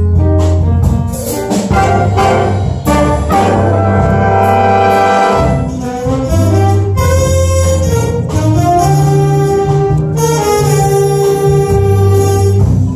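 Jazz big band playing a bossa nova chart live: brass and saxophones hold sustained chords over a stepping bass line.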